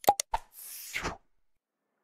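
Sound effects of an animated subscribe-and-share button: three quick mouse-click pops, then a short swish of about half a second.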